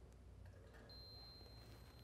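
A digital multimeter's continuity beeper sounding one steady high beep that starts about a second in and holds. It shows continuity: the pierced gray-with-red-stripe wire connects to the engine-control relay pin being probed.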